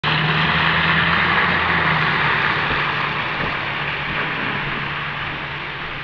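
A road vehicle on a wet street: engine hum under a steady hiss of tyres on the wet road, slowly fading away over the few seconds, the hum dying out first.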